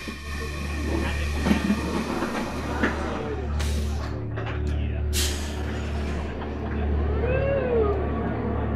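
On-ride sound of the Soarin' ride theater just before takeoff: a steady low rumble with two short hissing bursts of air about three and a half and five seconds in, the 'exhaust noise' sound effect that marks the start of the flight.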